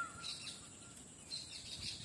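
Faint bird chirps over a quiet outdoor background: a short gliding call right at the start, then a few brief high chirps past the middle.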